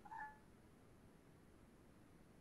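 A brief, faint, high-pitched sound just after the start, then near silence with faint room hiss.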